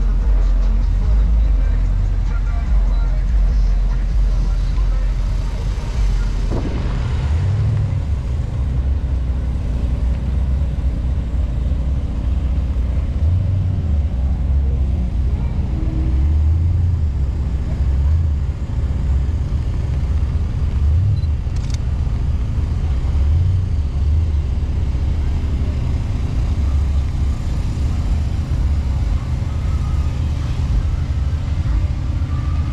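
A continuous low rumble from a vehicle, with voices in the background.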